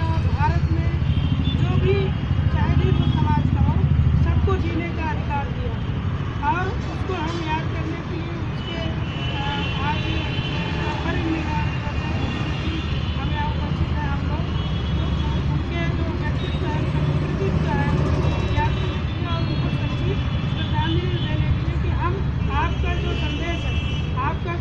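Steady road-traffic rumble, louder for the first few seconds, with indistinct voices of people around.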